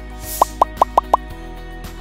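Background music with a brief whoosh, then five quick rising pop sound effects about a fifth of a second apart, the kind of editing effect used as five lines of on-screen text pop in.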